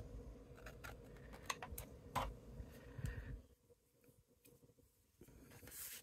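Scissors snipping cardstock and the sheet being handled: a few faint, sharp clicks and light rustles during the first three seconds.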